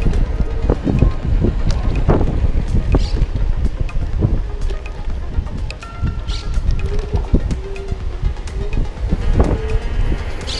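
Wind buffeting the microphone of an electric scooter riding along a street in Sport mode, a steady low rumble broken by occasional short knocks from the road.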